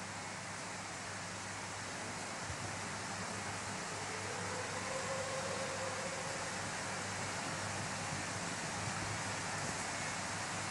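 Steady hiss with a faint low hum: the background room tone of a large church picked up by a live-stream microphone, with no speech or music.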